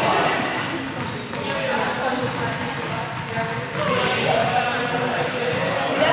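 Several people's voices chattering in a large gym hall, with a few sharp knocks like balls bouncing on the floor.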